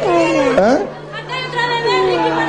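Indistinct voices: one voice speaking in the first second, then fainter, higher-pitched voices and chatter, over a steady low hum.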